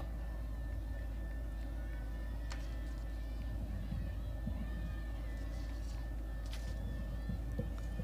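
Faint on-field ambience of a lacrosse game: distant calls from players over a steady low hum and a thin steady tone, with two sharp clicks a few seconds apart.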